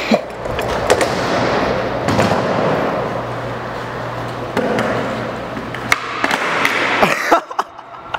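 Skateboard wheels rolling on a smooth concrete floor in a steady rumble, with a few sharp clacks of the board. The last clacks come about six to seven seconds in, during a flip-trick attempt that fails with barely any pop.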